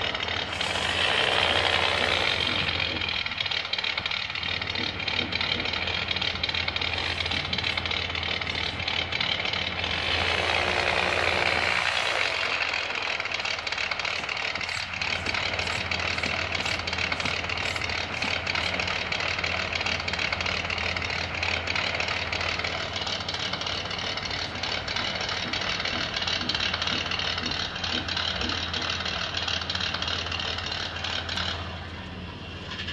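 The small electric motor and gear drivetrain of a 1/35-scale micro RC crawler whine as it drives, and the pitch rises and falls with its speed. The whine is louder for the first few seconds and again around the middle, over a steady low hum.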